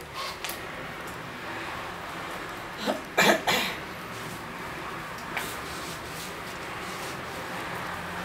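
A person coughing: a quick run of about three coughs about three seconds in, against a quiet room background, with a few light clicks near the start.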